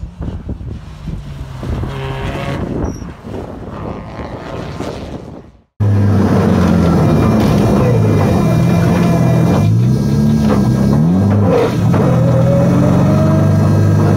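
Subaru Impreza WRX STi's turbocharged flat-four engine heard from beside the track as the car drives past, with wind on the microphone. About six seconds in it switches abruptly to the same engine loud from inside the cabin, revving up and down repeatedly through gear changes.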